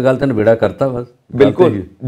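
Only speech: a man talking, with a brief pause about a second in.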